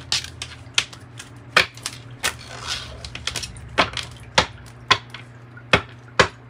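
Playing-card-sized tarot cards being gathered, squared and tapped down on a wooden tabletop: a string of sharp clicks, roughly two a second, with a brief papery swish of cards sliding about halfway through.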